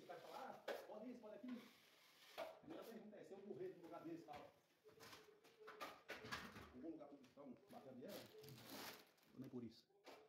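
Faint voices talking in a small room, with a few short scrapes of a steel trowel spreading joint compound on plasterboard.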